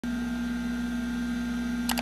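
Steady hum of a running desktop computer, holding a few fixed tones. Two quick clicks, a mouse double-click, come near the end.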